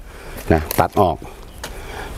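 Mostly a man's voice: a couple of short spoken words in Thai, followed by a faint, steady background hiss.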